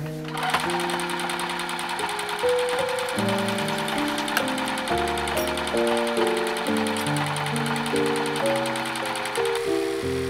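Bernette B37 computerized sewing machine stitching a neckband on cotton jersey, running at a steady fast speed that starts just after the beginning and stops near the end, under background music.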